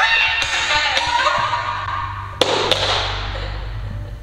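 Upbeat background music, with a sharp knock at the start as a broom is knocked off plastic buckets onto a wooden floor, and another sharp knock about two and a half seconds in.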